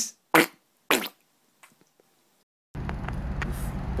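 A man making two short mouth noises in imitation of a fish drinking water. About a second later the sound drops out, and near the end a steady low outdoor background noise begins.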